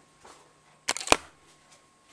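Several sharp mechanical clicks in quick succession about a second in, the last one loudest, from the video camera being handled as recording is stopped.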